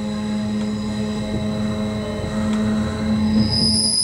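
Bernina Express electric train running slowly through a curve, heard from inside at the front: a steady hum from the drive with thin high whines, then a loud high-pitched wheel squeal from the curved rails starting shortly before the end.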